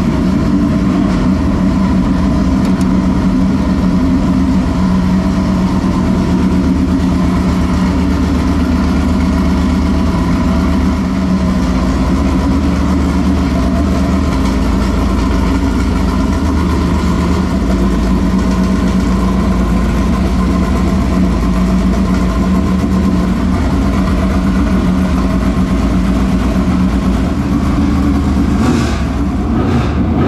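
GM 604 crate small-block V8 in a Dirt Late Model race car idling steadily, freshly started after sitting unused for a couple of weeks.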